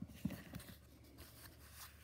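Faint handling noise: a few soft taps in the first half second as a fabric quilt block backed with paper pieces is moved about by hand.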